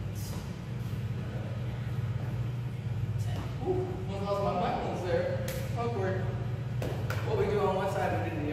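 A man's voice talking from about three seconds in, over a steady low hum, with a couple of sharp knocks in the second half.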